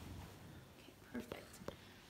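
Quiet room with faint movement sounds: a brief soft murmur and a couple of small clicks about a second and a half in.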